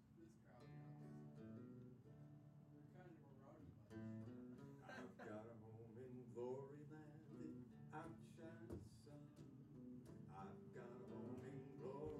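Acoustic guitar being strummed and picked, chords ringing on at a quiet level.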